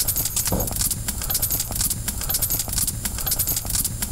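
Nenets hide-covered frame drum beaten with a stick in a fast, steady run of beats.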